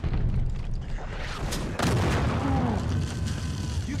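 War-drama battle sound effects: booming shellfire and gunshots over a continuous low rumble, with the loudest blast a little under two seconds in.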